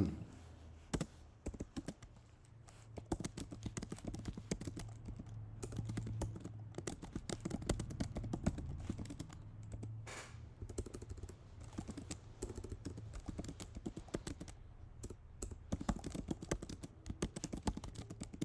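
Typing on a computer keyboard: a run of quick, irregular keystrokes with short pauses between bursts of words.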